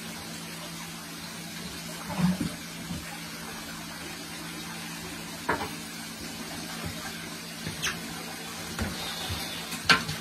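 Water moving in a large fish tank over a steady low hum, broken by a few short splashes and knocks as a net is worked through the water after a tarpon. The loudest come about two seconds in and at the very end.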